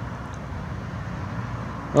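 Steady outdoor background noise: a low hum under an even hiss, with no distinct events.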